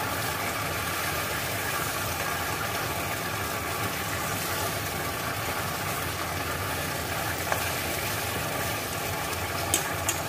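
Chicken frying in a pan with a steady sizzle, with a light click about seven seconds in and a few sharp clicks at the very end.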